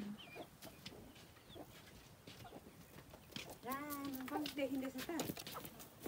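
A quiet stretch with faint clicks, then, a little past halfway, one drawn-out voiced call lasting about a second and a half.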